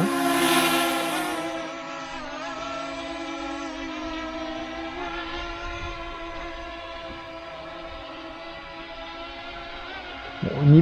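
F007 Pro mini quadcopter drone's motors and propellers whining in flight: a steady, many-toned buzz with small wavers in pitch. It is loudest at first and fades over about two seconds as the drone moves away, then holds steady at a lower level.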